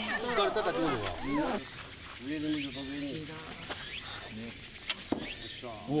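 People talking and laughing. There are two sharp clicks about five seconds in.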